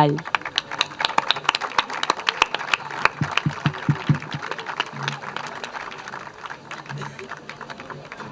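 Audience clapping, dense at first and thinning out as it fades toward the end.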